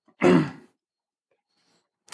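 A man's short, breathy sigh that falls in pitch, lasting about half a second.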